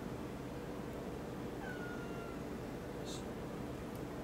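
A cat's single short meow about a second and a half in, falling slightly in pitch, over a steady low hum, with a brief soft hiss a little later.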